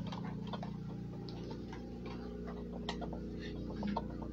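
Light, irregular clicks and ticks over a steady low room hum.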